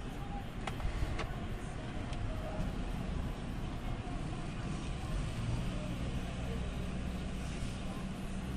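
Steady low rumble and hiss of background noise, with two short sharp clicks in the first second and a half.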